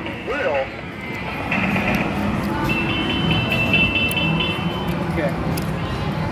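Arcade room din: short high electronic beeps and jingle tones from game machines, repeated in quick pulses, over a steady murmur of background chatter.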